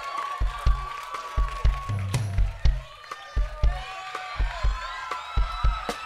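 Live band with a saxophone section and drums playing: a driving kick-drum beat under long held horn notes, with a voice over the music.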